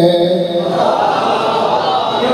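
A man's held sung note of a majlis recitation (zakr) ends about half a second in. Many voices then call out together in response.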